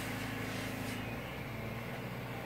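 Steady low mechanical hum with no clear events.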